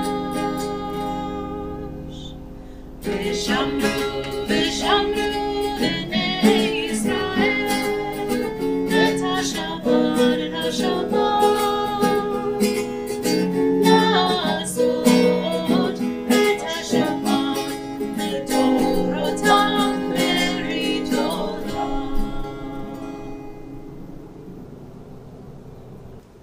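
Acoustic guitar strummed with a woman singing along. A chord rings out and dies away at the start, the strumming and singing pick up about three seconds in, and the playing fades out near the end.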